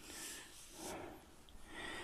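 Soft, faint rustling of a palm rubbing a freshly glued paper picture flat onto a collage page, in two short swells.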